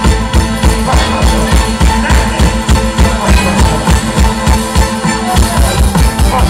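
Live band music from the stage, with drum kit and electric guitar playing a steady beat.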